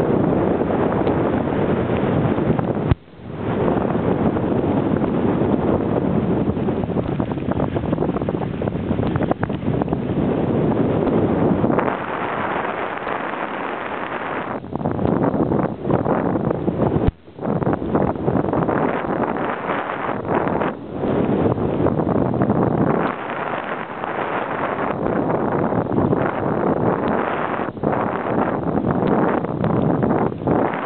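Wind rushing over a handheld camera's microphone while skiing downhill, loud and continuous. It cuts out briefly about three seconds in and again a little past the middle.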